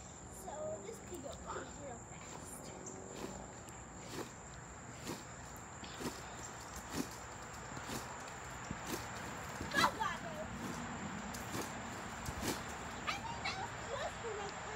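Trampoline bouncing: short soft thumps of feet landing on the mat and springs, about one a second. The loudest moment, about ten seconds in, is a brief squeak.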